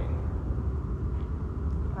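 Steady low room rumble with no speech.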